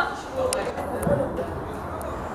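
Two sharp knocks about half a second apart, a football being kicked on an artificial-turf pitch, over faint talk from people at the sideline.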